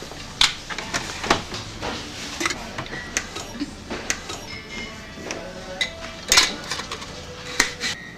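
A glass jar and scoop clinking and knocking as salt is scooped into the jar: a string of sharp clicks, loudest near the end, with music in the background.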